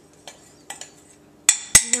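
A metal spoon scraping and knocking against a glass measuring cup as buttered cookie crumbs are worked out of it: a few light clicks, then two sharp clinks near the end.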